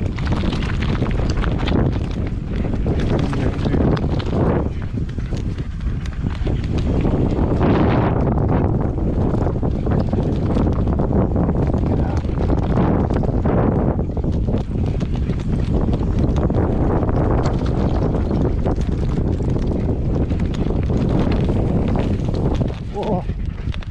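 Wind buffeting an action camera's microphone during a fast mountain-bike descent: a loud, steady rumble that rises and falls a little with the gusts.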